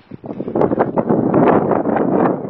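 Wind buffeting the microphone, a loud fluttering rumble.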